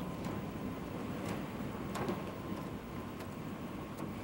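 Steady outdoor background rumble with a few faint light clicks.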